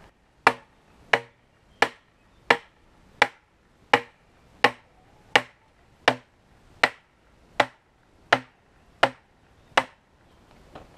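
Mallet blows on the top of a metal fence post: fourteen sharp strikes, evenly spaced at about three every two seconds, each with a short ring.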